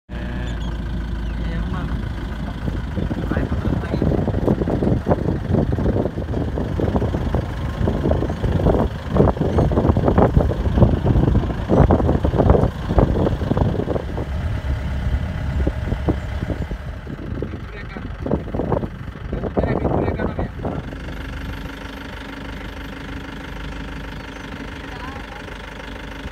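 Safari jeep's engine running with a steady low rumble, with a dense clatter of rattles and jolts from a few seconds in until about twenty seconds, then settling to a steadier, quieter hum near the end.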